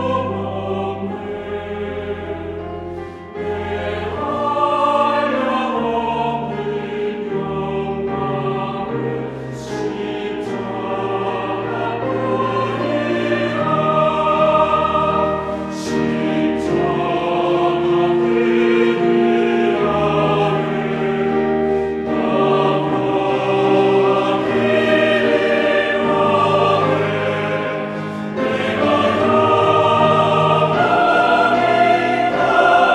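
Mixed church choir singing a Korean-language hymn anthem in parts, with piano accompaniment, swelling louder near the end.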